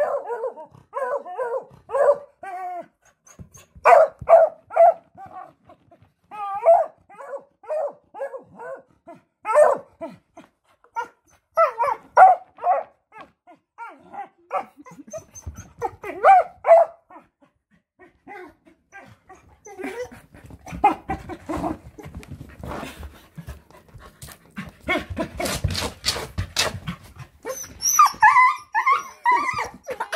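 A dog giving short, high yips and barks in quick bursts for the first seventeen seconds or so, then a stretch of rustling and shuffling from about twenty seconds in.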